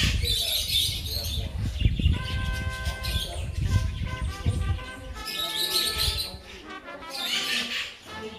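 Caged parakeets chirping and screeching in an aviary, with bursts of shrill calls at the start, around six seconds in and again near the end.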